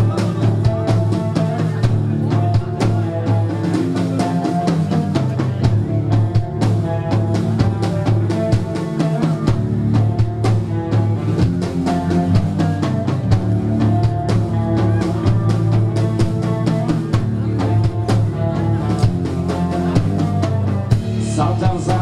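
Live rock band playing an instrumental passage: electric guitars over a drum kit with bass drum and snare, steady and loud.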